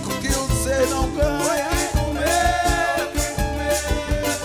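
Live samba band playing: cavaquinho, acoustic guitar, drum kit and conga-style hand drums keeping a steady beat, with a woman singing over it.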